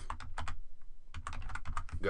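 Typing on a computer keyboard: a quick run of keystroke clicks with a brief lull about halfway through.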